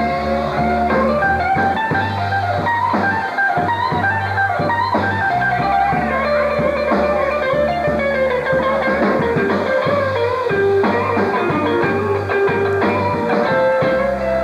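Live blues-rock band playing an instrumental passage: electric guitars over bass and a drum kit, with no singing.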